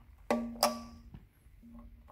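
Two sharp clicks about a third of a second apart as the electric tow tug's emergency-off switch is unlocked and its key switch turned, each click followed by a brief ringing tone.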